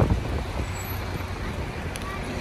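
Road traffic noise from a busy street: a steady low rumble of passing vehicles.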